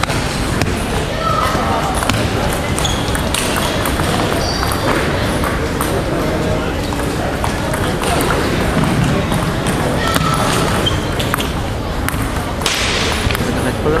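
Table tennis ball clicking off paddles and table in a rally, with scattered sharp ticks, a few short high squeaks, and voices echoing in a large sports hall.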